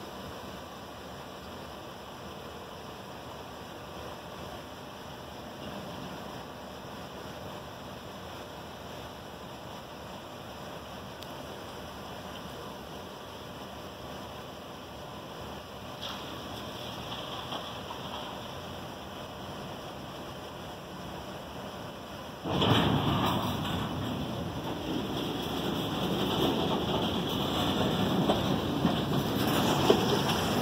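Freight cars rolling past a grade crossing, a loud, steady rumble of steel wheels on rail that starts suddenly near the end. Before it there is only a quieter, steady outdoor rumble while the train backs slowly into the yard.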